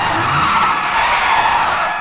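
An SUV's tyres skidding across pavement in a long, loud slide, with the engine revving up underneath.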